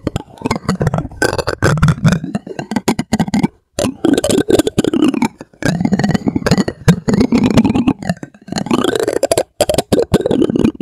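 Plastic spoon rubbed and tapped close to the microphone: a dense run of crackling scrapes and clicks, broken by two short pauses, about three and a half seconds in and just before the end.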